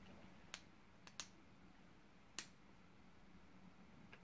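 A few small, sharp clicks of small plastic shock-tool parts knocking together as they are handled and fitted, the loudest a little past halfway, over quiet room tone.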